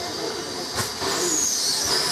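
Baldwin 4-6-2 steam locomotive moving slowly, with a steady hiss of steam and a single sharp knock just under a second in. The hiss grows louder from about a second in.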